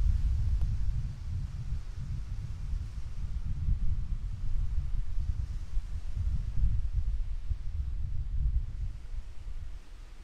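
Wind buffeting the microphone, a gusty low rumble that rises and falls throughout, over a faint wash of small waves on a pebbly lakeshore.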